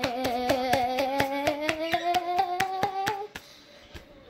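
A child holding one long hummed or sung note that slowly rises in pitch, with quick sharp hand taps about six a second over it; both stop a little after three seconds in.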